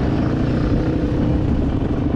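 Engine of a Yamaha sport ATV running steadily, heard from the rider's own quad.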